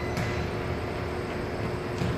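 Steady low rumble with a constant low hum underneath, the background noise of a large indoor room.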